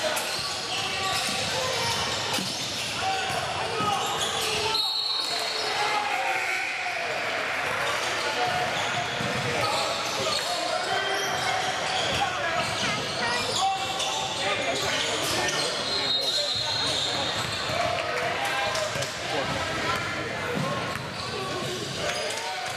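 Echoing gymnasium ambience: indistinct chatter from players and spectators in a large hall, with a basketball bouncing on the hardwood floor as a player dribbles at the free-throw line.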